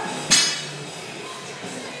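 A single sharp metallic clank, with a short ringing after it, as a loaded barbell with metal plates is set down on the floor about a third of a second in. Background music runs underneath.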